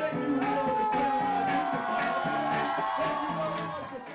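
Ska band music with horns, drums and singing, starting to fade out near the end.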